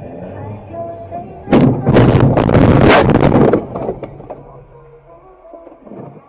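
A dashcam car's collision: a sudden, very loud impact about one and a half seconds in, followed by a rapid jumble of knocks and jolts for about two seconds before it dies away.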